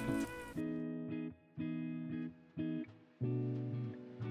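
Background music played on a plucked guitar, short phrases of notes and chords with brief pauses between them.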